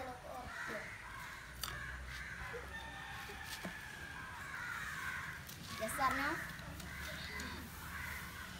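Outdoor birds calling on and off, with a boy's voice and sounds now and then, loudest about six seconds in.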